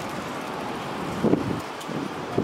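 Street ambience by a city road: a steady hiss of traffic and wind on the microphone, with a short voice-like sound about a second and a quarter in.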